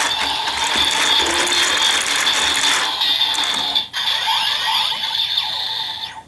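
A DX Build Driver toy transformation belt having its crank lever turned, its gears ratcheting continuously over the belt's electronic sound effects, with a brief break about four seconds in.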